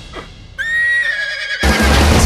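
A cartoon horse's high, drawn-out whinny lasting about a second, its pitch falling slightly, heard after a soft swish. It is cut off by loud orchestral music coming in.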